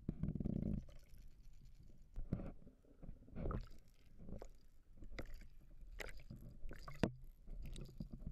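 Muffled water noise picked up by an underwater camera trolled with an umbrella rig: a low rumble in the first second, then irregular knocks and sharp clicks.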